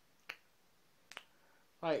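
Two short, sharp clicks about a second apart in a pause between words, the second a little softer.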